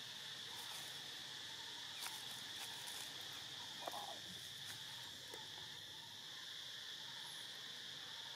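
Steady high-pitched insect chorus droning without a break, with a few faint clicks, the loudest about two and four seconds in.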